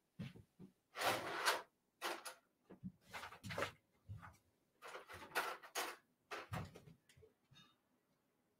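Rummaging off-mic: drawers being opened and shut and objects handled, a string of irregular knocks and rustles, the longest about a second in.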